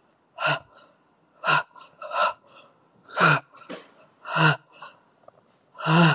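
A man's sharp, gasping breaths close to the microphone, about six short breaths in a row roughly a second apart.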